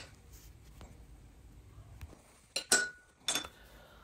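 Two short metallic clinks, just over half a second apart, in the second half; the first rings briefly. They come from a steel pipe center finder tool knocking against a steel pipe, after a near-quiet stretch with one faint click.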